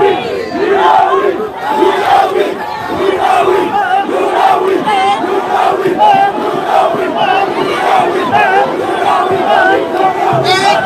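Large crowd of many voices shouting and cheering together, loud and sustained without a pause.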